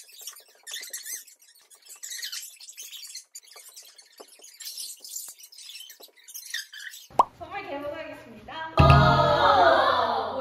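Soft, sparse background music of light, plinking high notes, then voices coming in loudly over it in the last few seconds.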